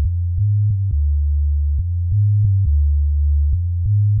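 Hip-hop track stripped down to a deep bassline on its own, stepping between a few low notes, with a faint click where each note changes.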